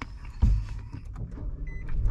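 Inside a car: a sudden low thump about half a second in, then a steady low rumble, and a brief electronic chime from the car near the end.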